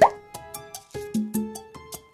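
Short, light music jingle of quick plucked notes, opening with a loud rising 'bloop' pop effect.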